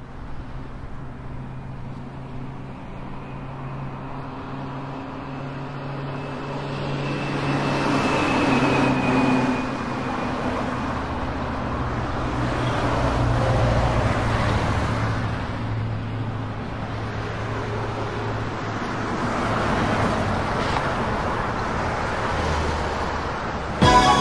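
City traffic ambience: a steady low hum of road traffic with a wash of street noise that grows louder over the first several seconds, then swells and eases.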